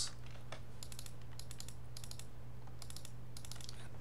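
Light, scattered clicks of a computer keyboard and mouse in small clusters, over a steady low hum.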